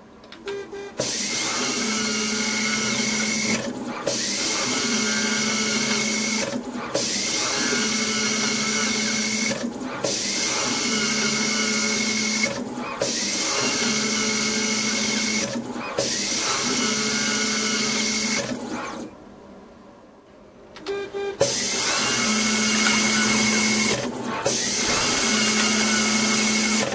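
Janome JR-V2000 series desktop screw-fastening robot at work, its electric screwdriver driving small screws one after another. It runs in repeated cycles of about two to three seconds, each a steady motor whine with a hiss, with short breaks between them and one longer pause about two-thirds of the way through.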